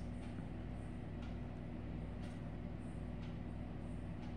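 Steady low hum, with a few faint strokes of a pen writing on paper about a second apart.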